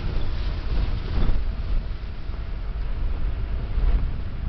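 Steady low rumble of a vehicle driving along a dirt road, with a brief louder burst about a second in.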